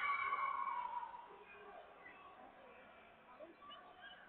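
A single high-pitched shouted call in a voice, loudest in the first second and dying away, over faint crowd chatter in a large hall.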